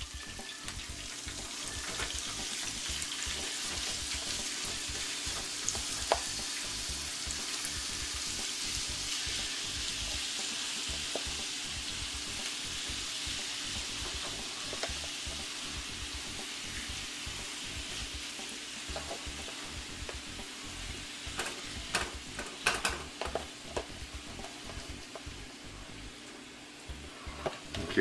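Cubed sirloin tips sizzling in hot garlic-infused canola oil in a skillet as they are dropped in by hand, a steady frying hiss. A few sharp clicks come about three-quarters of the way through.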